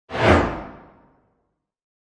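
A single whoosh sound effect, like a channel intro sting. It starts suddenly, peaks almost at once and fades away over about a second.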